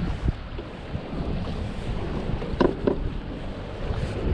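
Wind buffeting an action-camera microphone over choppy water slapping around a kayak, a steady low rumble. Two short knocks come about two and a half seconds in.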